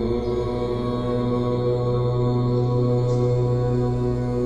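Meditation music: a deep chanted tone held steady over a sustained drone, swelling in just before it.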